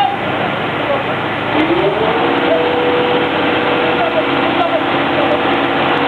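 A fire truck's engine rises in pitch about a second and a half in, then holds a steady hum, over a constant rushing background and people's voices.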